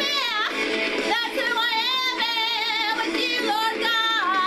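A woman singing, holding long notes with a wide vibrato and sliding between pitches.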